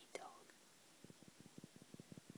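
Near silence: a brief breathy, whisper-like sound at the start, then faint soft low taps in a quick, even rhythm of about eight to ten a second from about a second in.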